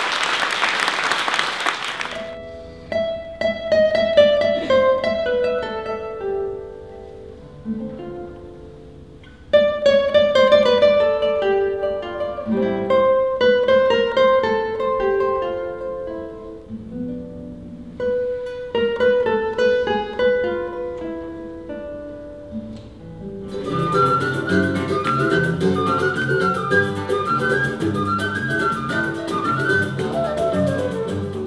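Applause for about two seconds, then a solo nylon-string classical guitar playing a slow plucked melody with pauses. About 23 seconds in, it cuts to a livelier acoustic ensemble of flute and guitars.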